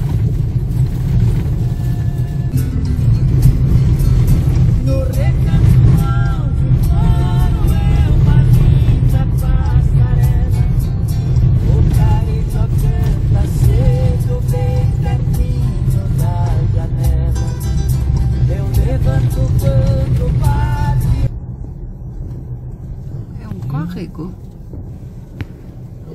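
4x4 pickup truck driving on a dirt road, heard from inside the cab: a loud, steady low rumble of tyres and engine with frequent rattles and knocks, with music playing over it. About 21 seconds in, the rumble cuts off abruptly and a much quieter scene follows.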